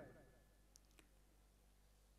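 Near silence: a pause between spoken phrases, broken by two faint clicks, the second about a quarter of a second after the first.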